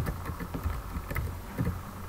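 A few faint clicks of computer keyboard keys being typed, over a low steady rumble of room and microphone noise.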